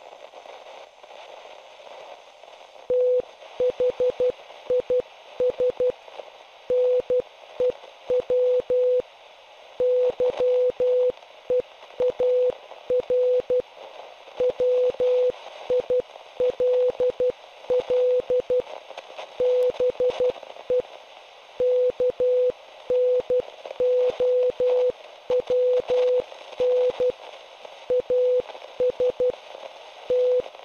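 Morse code received on a radio: a single beep tone keyed on and off in short and long pulses, starting about three seconds in, over constant radio static hiss.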